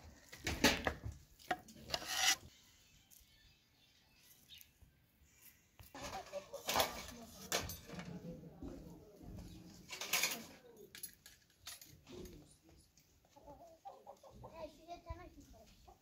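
A domestic chicken clucking. Several sharp clinks and scrapes come from a metal skimmer on metal serving plates and a pot, the loudest about half a second and two seconds in.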